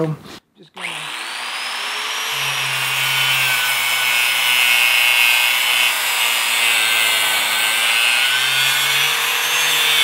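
Angle grinder with a cutting disc cutting through a heavy copper battery cable clamped in a bench vise. It starts about a second in with a steady high whine over a grinding hiss, its pitch wavering as the disc bears into the cable.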